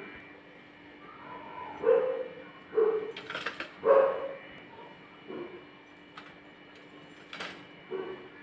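A perforated steel skimmer setting fried vadi pieces onto a steel plate, with a few light metallic clinks about three and a half and seven seconds in. Three or four faint, short whining calls sound in the background over a low steady hum.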